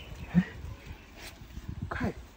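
Faint crackling of dry leaf litter and a long wooden pole being handled. There is one short low sound about half a second in, and a quick falling swish near the end as the pole is swung.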